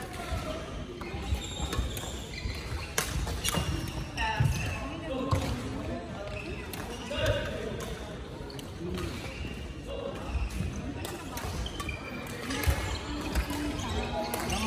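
Badminton game on a wooden hall floor: sharp racket hits on the shuttlecock several times, shoe squeaks and footfalls on the court, under a murmur of voices echoing in the hall.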